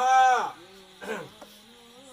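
A man's voice calling out one drawn-out syllable that falls in pitch, loudest at the start. A brief short vocal sound follows about a second in.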